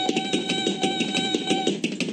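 A cartoon robot's electronic beeping: a rapid string of beeps over a steady buzzy tone, in alarm at a butterfly. The beeping trails off near the end.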